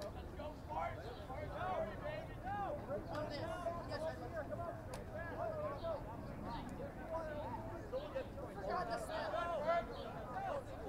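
Overlapping distant voices of players and spectators talking and calling out across an open field, over a steady low outdoor background, with one brief sharp tap about halfway through.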